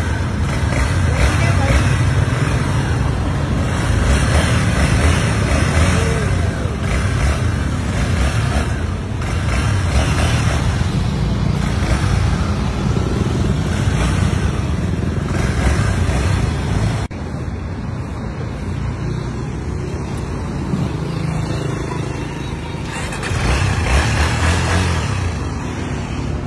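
Honda XR motorcycle's single-cylinder four-stroke engine running at low speed, a steady low rumble; the sound drops in level and changes abruptly about 17 seconds in.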